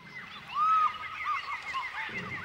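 Many quick, overlapping bird-like chirps, each rising and falling in pitch, with one louder, longer arching call about half a second in.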